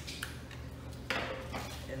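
Fillet knife cutting into a red drum's scaly skin and flesh: a light click near the start, then a short scraping rasp about a second in.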